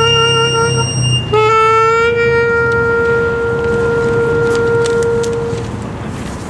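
Saxophone playing long held notes. The first breaks off about a second in; the next slides up slightly as it starts, is held for about four seconds, and fades near the end.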